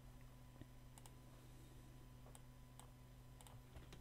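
Near silence: a few faint, scattered clicks of a computer keyboard and mouse over a steady low hum.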